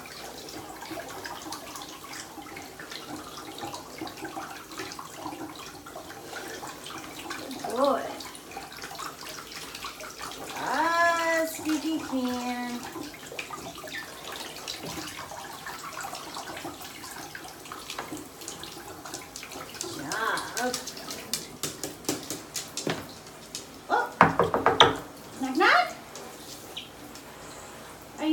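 Handheld shower head running, spraying water steadily onto a cockatoo's feathers in a bathtub. A few short voice sounds break in partway through, and there is a burst of louder sharp sounds near the end.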